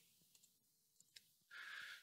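Near silence, with one faint click a little past halfway: a computer mouse button pressed to start playback.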